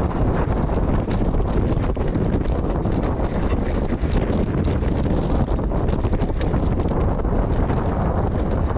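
Heavy wind buffeting on a GoPro Hero 9's microphone as a Pace RC295 mountain bike rolls fast down stony singletrack. Tyres run over gravel, and the bike gives frequent small clicks and rattles as it goes over the rocks.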